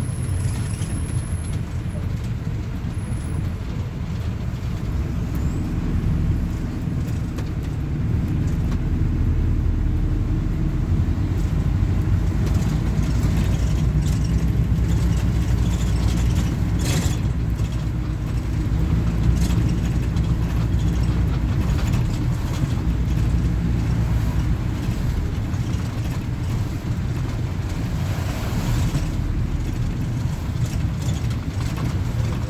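Interior sound of a Plaxton Beaver 2 minibus on the move: the diesel engine drones steadily under load, with tyre noise on a wet road, and it grows a little louder as the bus picks up speed about a quarter of the way in. A brief sharp knock or rattle from the body comes about halfway through.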